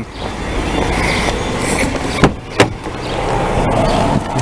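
Steady rumbling road and engine noise inside a moving car, with two sharp clicks about a third of a second apart near the middle.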